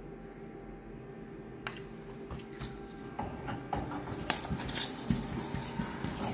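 Colour photocopier running a scan after its Start button is pressed: a steady machine hum with a click about one and a half seconds in. From about three seconds in, scraping, rubbing and small knocks come as something is slid by hand over the scanner glass during the scan.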